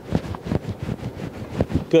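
Clothing and vinyl rustling with several soft clicks and knocks as a patient's torso is held in a side-lying spinal stretch on a chiropractic table.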